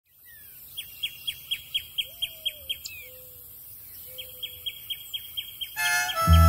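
Birds chirping: two runs of quick, evenly spaced high chirps, about four a second, with a few lower drawn-out notes between them. Harmonica music starts just before the end.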